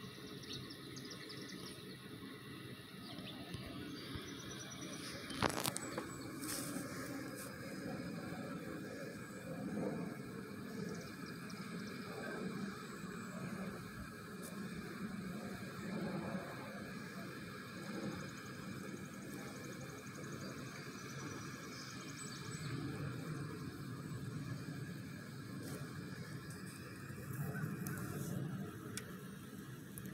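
Faint outdoor background noise that rises and falls gently, with a single sharp click about five and a half seconds in.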